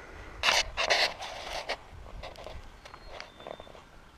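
Handling noise from a handheld camera: two brief rustling scrapes about half a second and a second in, then fainter clicks and rustles.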